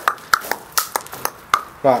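A quick, irregular run of sharp clicks or taps, about three or four a second, each with a brief ringing tone, followed near the end by a man saying "Right".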